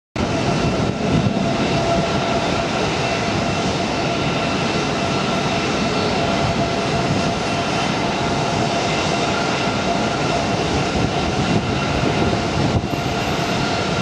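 Jet airliner engines running steadily: a continuous rumble with a steady high whine over it.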